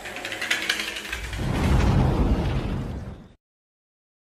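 Rapid clatter of cardboard matchboxes tipping over one after another in a domino chain. About a second in, a deep rumbling boom of an explosion sound effect takes over and is the loudest part, then cuts off suddenly.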